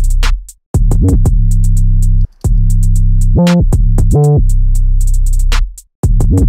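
Programmed trap beat playing back in Ableton Live: a loud sustained 808 sub-bass from a Sampler patch set up to glide between notes, under rapid hi-hats. The beat cuts out briefly three times.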